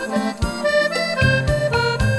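Accordion playing held melody notes in a rumba dance arrangement, over a bass line and light percussion keeping a steady beat; no singing.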